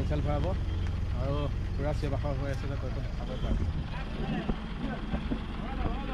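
A large bus's engine idling with a low, steady rumble that fades about halfway through, while several people's voices chatter around it.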